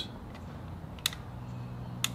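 Sharp plastic clicks from a toy RC crawler car being handled and checked over, two clicks about a second apart, over a faint steady low hum.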